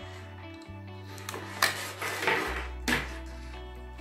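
A few sharp plastic clicks and taps in the middle, as an HDMI cable is pushed into a camcorder's side port, over quiet background music with steady low notes.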